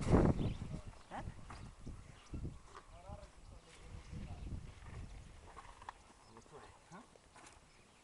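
Tiger cubs scuffling and wrestling with a person on grass: rustling, brushing and soft knocks, loudest in the first half second. A short wavering vocal sound comes about three seconds in.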